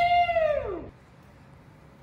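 A person's high whooping "woo!" shout, one held call about a second long whose pitch rises and then falls away.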